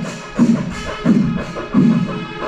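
Kerala chenda melam, the panchari melam of the festival: a massed ensemble of chenda drums and ilathalam cymbals plays continuously. Three heavy low strokes land about 0.7 s apart over a constant rattle of drum sticks and ringing cymbals.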